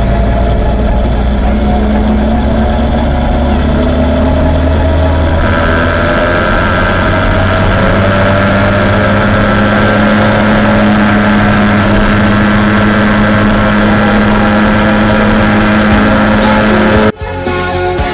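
Jawa Babetta 210 moped's small two-stroke single-cylinder engine running while riding. Its pitch climbs over the first few seconds, then holds steady. It cuts off suddenly near the end.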